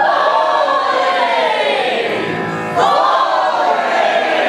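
A group of voices singing together live, holding long notes that slide up and down in pitch, with a new swell starting about three seconds in.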